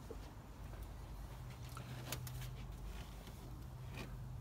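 Quiet steady low hum with a few faint clicks a couple of seconds in.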